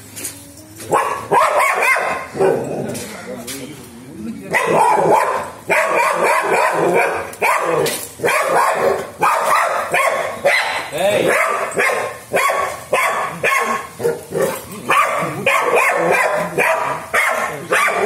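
Labrador retriever barking over and over, in short barks about two a second, starting about four and a half seconds in.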